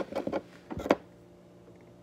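A few light clicks and knocks of hard resin dominoes being handled and set on the table, the loudest just under a second in, followed by a faint steady room hum.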